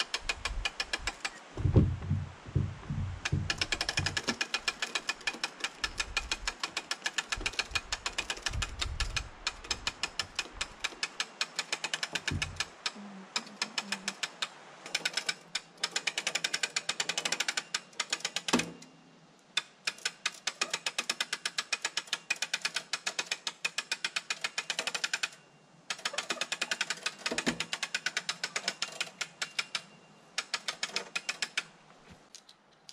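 Hand hoist hung from a wooden log tripod ratcheting as a log is winched up, with its pawl giving rapid, even clicks in long runs and a couple of short pauses. Some low thuds come in the first third.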